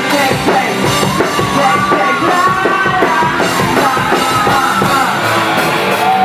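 Live pop-punk band playing loud in a club: drums and electric guitar, with singing over them.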